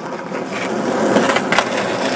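Skateboard wheels rolling on rough asphalt, growing louder over the first second, with a few sharp clacks in the second half.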